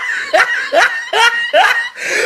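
High-pitched laughter in quick repeated bursts, about two a second.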